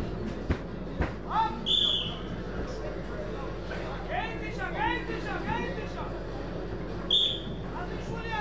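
Referee's whistle blown twice, two short blasts about five seconds apart, with shouts from voices around them.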